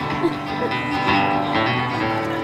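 Guitar playing chords in a live song, the instrumental gap between sung lines, with the chord changing about every half second.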